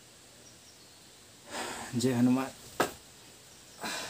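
Quiet background, then a man's short spoken phrase about two seconds in, followed by a sharp click and another brief sharp sound near the end.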